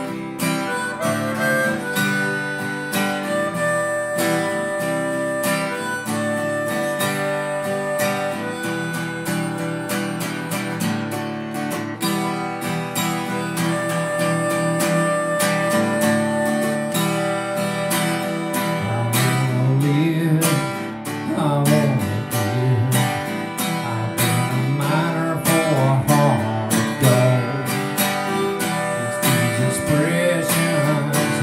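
Acoustic guitar strumming chords with a harmonica playing the melody over it in sustained notes. About two-thirds of the way in, a man's singing voice appears to come in over the guitar.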